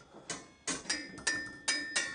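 A metal square being lifted off a wall tool rack: a quick run of light metallic clinks, several of them ringing briefly.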